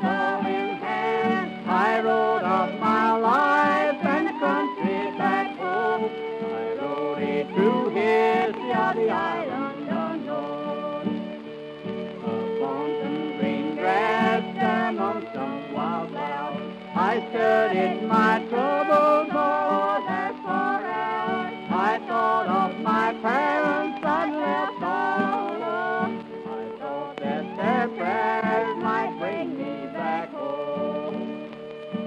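Texas-style old-time fiddle playing an instrumental passage, the bowed melody wavering and ornamented, over a guitar accompaniment.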